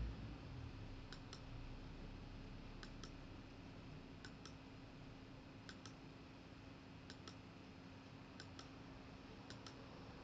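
Faint computer clicks, each a quick double click like a button pressed and released, about one every one and a half seconds, over a low steady hum. Each click advances the slideshow by one answer.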